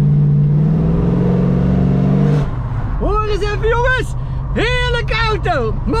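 1974 Dodge Challenger's V8 engine revving, its pitch rising slightly for about two and a half seconds before it eases off and keeps running lower underneath voices.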